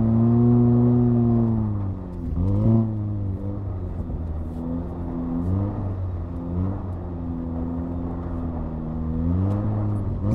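2018 VW Golf R's turbocharged 2.0-litre four-cylinder, fitted with a cold air intake and a resonator delete. Its revs rise and fall back over the first two seconds, and there is a short blip of throttle about three seconds in. It then runs at a steadier lower pitch with small swells of throttle.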